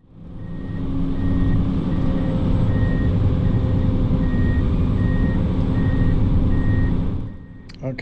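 PistenBully 600 snow groomer's diesel engine running steadily, heard from inside the cab, with an alarm beeping about one and a half times a second over it. The sound fades in at the start and drops away about seven seconds in.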